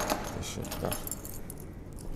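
A bunch of keys jangling in a hand: light, irregular metallic clinks.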